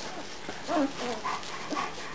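Nine-day-old German Shepherd puppies squeaking and whimpering while they nurse: a few short, wavering calls, the loudest about three quarters of a second in.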